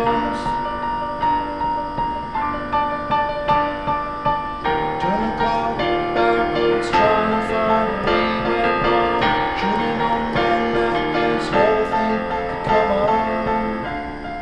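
Roland FP-4 digital piano playing an instrumental passage of held chords that change about every second, with repeated notes struck over them.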